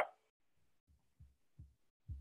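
Near silence, broken by three short, faint low thumps between about one and one and a half seconds in.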